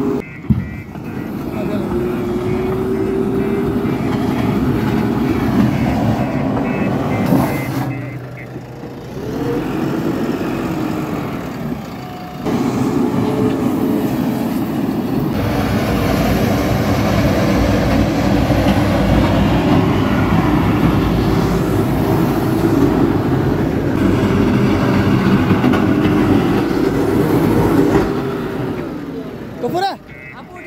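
JCB 3DX backhoe loader's diesel engine working under load while its front bucket levels soil, the engine note rising and falling. The sound drops away briefly twice, about a third of the way in.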